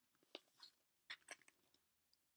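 Near silence with a few faint clicks and a soft rustle of paper: the pages of a paperback quilting pattern book being handled.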